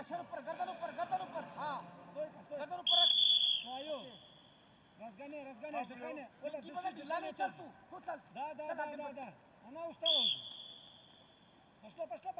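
Wrestling referee's whistle: two short shrill blasts, the first about three seconds in and a shorter one about ten seconds in, just before the wrestlers restart standing.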